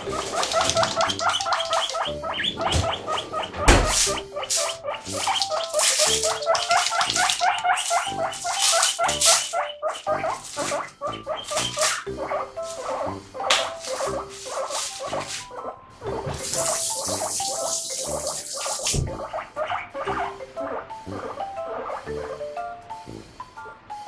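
Guinea pig squeaking in rapid runs of short repeated calls (pui-pui), set off by the sound of the refrigerator and asking for vegetables. A single loud thump comes about four seconds in, and a brief burst of rustling hiss later on.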